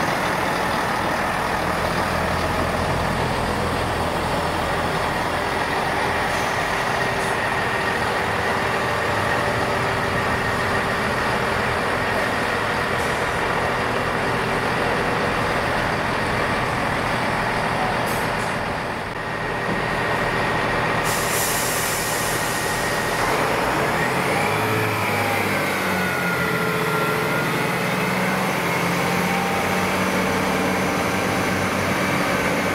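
Northern Class 158 Express Sprinter diesel multiple unit running slowly and then standing at the platform with its diesel engines running, a steady whine over the engine noise. About two-thirds of the way through, a hiss of air starts, and soon after the engine note rises and wavers as the unit readies to depart.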